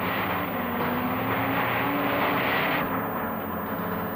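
Jeep engine running as the vehicle drives along: a steady engine sound with road noise, easing off a little about three seconds in.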